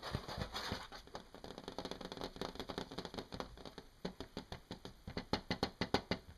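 Fingertips tapping and scratching on a hard plastic face mask: a scratchy rasp in the first second, then quick, irregular taps, several a second, bunching closer together near the end.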